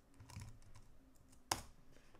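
Typing on a computer keyboard: a few soft key clicks, then a single sharper, louder click about one and a half seconds in.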